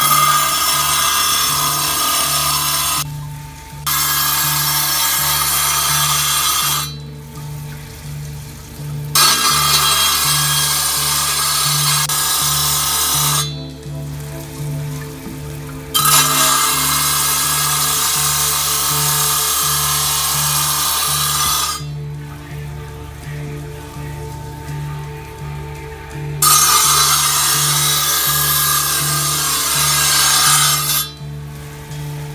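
A piece of glass ground against a spinning cold-working wheel: a loud hissing grind in stretches of a few seconds, broken by short pauses when the glass comes off the wheel. A steady low hum runs underneath throughout.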